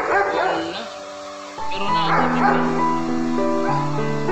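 Background music, with a bulldog giving high, wavering whimpers and yelps twice: just at the start and again about halfway through, while being held for artificial insemination.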